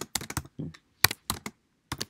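Typing on a computer keyboard: two short runs of keystrokes with a brief pause between them.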